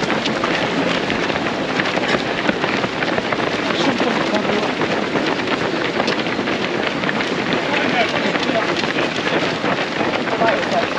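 A large pack of runners going past on a tarmac road: many overlapping footsteps mixed with indistinct chatter and calls from the runners, a dense, steady crowd sound.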